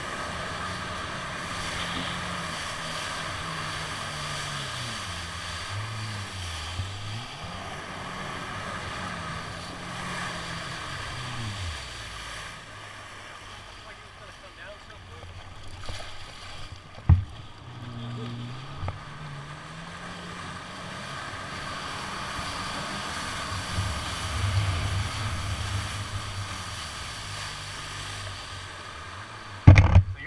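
Jet ski engine running, its pitch rising and falling as the throttle is opened and eased through turns, with water spray and wind rushing over the microphone. The engine drops back for a few seconds midway, and there is one sharp knock shortly after.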